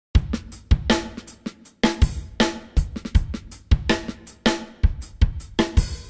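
A drum kit playing a steady beat on its own: kick drum, snare and hi-hat hits at an even pace.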